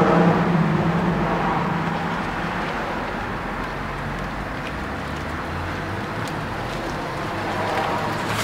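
Road traffic noise: a steady wash of vehicles going by, loudest at the start and easing off after a few seconds.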